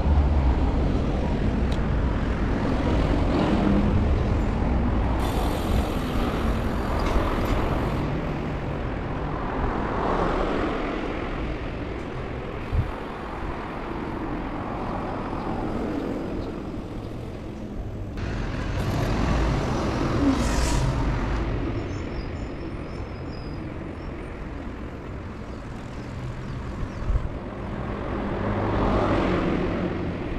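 Road traffic on a city street: cars passing one after another, each swelling and fading, over a steady background rumble.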